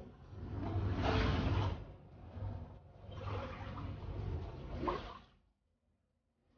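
Floodwater being pushed across a floor with a long-handled broom, in two long sweeps of a couple of seconds each. The sound cuts off shortly before the end.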